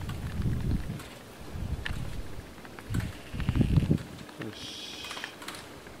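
Wind buffeting the microphone in gusts during a snowstorm, coming as low rumbling surges, with scattered sharp clicks and a brief high-pitched sound about five seconds in.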